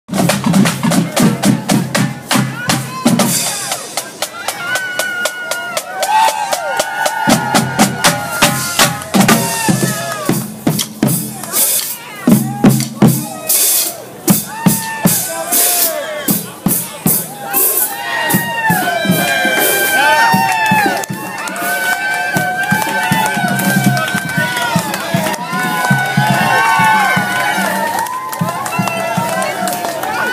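A college marching band's drumline playing, with snare and bass drum strokes, while a crowd shouts and calls over it. The voices grow thicker in the second half.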